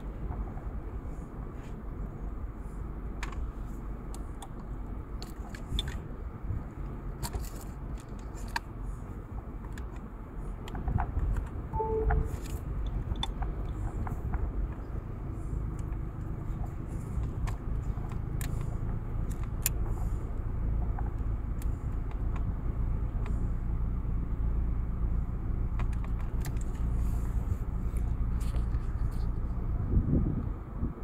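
Car driving slowly over a rough dirt desert track, heard from inside the car: a steady low rumble of engine and tyres with scattered clicks and rattles from the bumpy ground. The rumble grows louder about eleven seconds in.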